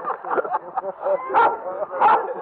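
A dog barks once, about two-thirds of the way in, over low talk from a group of people.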